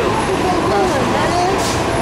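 Steady city street traffic noise with people talking over it, and a brief hiss about one and a half seconds in.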